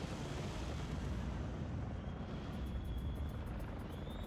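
Low, steady rumbling drone of a live rock show's sound system and crowd between songs. About halfway through a faint high whine sets in, and rapid, evenly spaced high ticks start.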